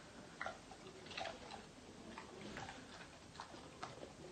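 Faint, irregular small clicks and smacks of a boxer dog's mouth as it takes a treat from a hand and chews.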